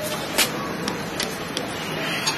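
A few light clicks and taps from a nylon belt clip being handled at a bench vise, the clearest about half a second in, over a steady hiss.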